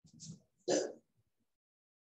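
A person clearing their throat: two short rasping bursts, the second and louder about three-quarters of a second in.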